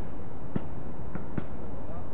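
Steady low outdoor background rumble, with a few faint short clicks in it.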